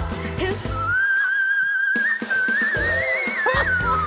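Live pop performance: a female singer over a band, who about a second in holds one very high, whistle-like note that climbs higher and then slides down near the end. The band drops away under the held note and comes back in.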